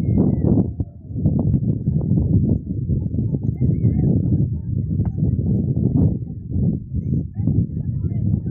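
Wind buffeting the phone's microphone: a loud, low, irregular rumble that swells and dips, with scattered faint knocks through it.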